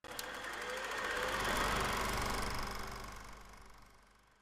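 Logo sting sound effect: a dense, rapidly fluttering rush that starts suddenly, swells over about a second and a half, then fades away.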